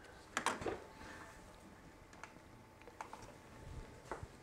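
A plastic SMD component storage box being handled on a workbench: a quick cluster of clicks and knocks about half a second in, then a few faint ticks.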